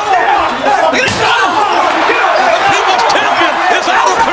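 Several men shouting over each other during a scuffle, with one loud slam about a second in as a body is thrown into metal lockers.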